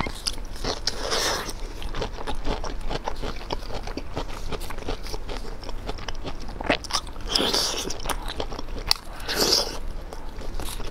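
Close-miked eating: a person biting and chewing crisp, chili-coated food, with steady small crunches and clicks. Three louder crunching bites come about a second in, about three quarters of the way through, and near the end.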